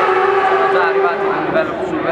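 A young man talking in Italian, over a steady drone that slowly falls in pitch.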